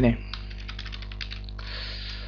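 Computer keyboard typing: a quick run of about ten keystrokes, then a short hiss near the end, over a steady buzz from the microphone.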